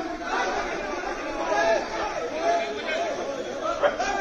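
A crowd of men talking and shouting over one another, with one short, sharp louder sound just before the end.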